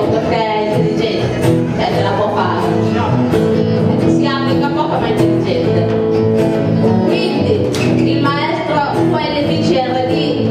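Live choir singing with an acoustic band of guitars and double bass, held chords under wavering sung phrases.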